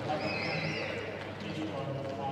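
A high-pitched, wavering whistle-like tone lasting about a second near the start, over a steady low hum and faint voices in an indoor arena.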